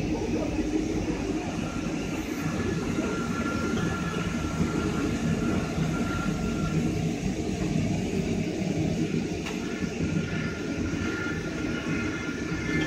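Steady mechanical rumble and hum of automatic fabric spreading and cutting machines running, with a faint whine that comes and goes.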